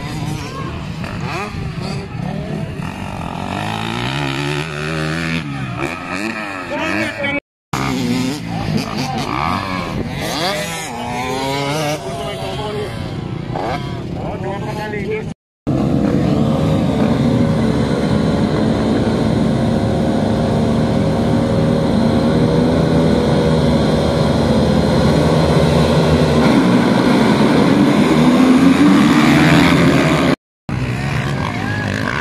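Motocross dirt bike engines. At first single bikes rev up and down in pitch out on the track; after a cut, a full field of dirt bikes revs together at the starting gate, building louder until they launch near the end.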